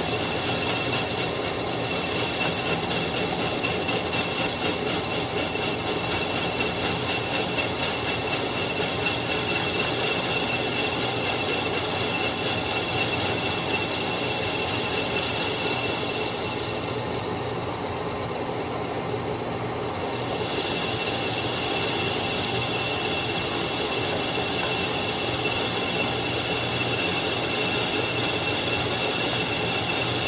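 Metal lathe running steadily with its chuck spinning and its drive whining, while a hand-fed cutting tool turns the shoulder of a metal bushing. The higher cutting noise eases off briefly about two-thirds of the way through.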